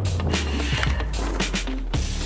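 Background music with a deep, sustained bass and a steady drum beat.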